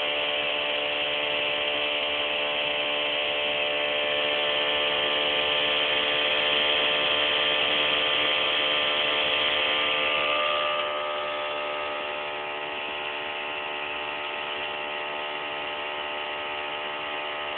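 Bedini SSG pulse motor with its magnet rotor spinning steadily while it charges a cellphone battery: a steady whine of several tones, a little quieter from about eleven seconds in.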